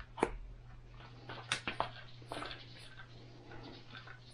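Faint handling of plastic parts: a few small clicks and soft rubbing as a plastic clamp is screwed into a 3D-printed tool holder, over a low steady hum.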